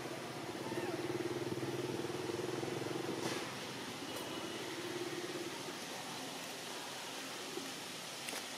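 Steady, level hum of a distant motor engine, stronger for the first three seconds or so, cutting down, then returning more faintly for a moment around the middle.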